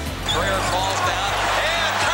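Basketball game sound: a ball bouncing on the court, with voices and background music underneath.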